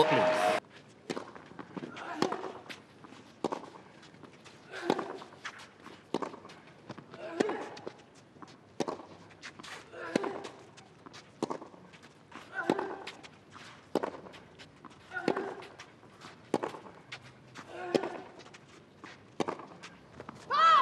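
Tennis rally on a clay court: the ball is struck back and forth about every 1.3 seconds, some fifteen shots in all. One player lets out a short grunt on every other shot.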